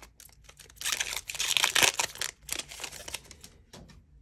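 A Panini Prizm football card pack's wrapper being torn open and crinkled by hand: a crackling rustle with sharp clicks, dying away near the end.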